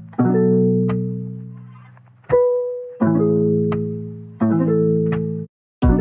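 Background music of plucked chords, each struck and left to ring out, a new one every second or so. It drops out briefly near the end, then a busier run of quick notes begins.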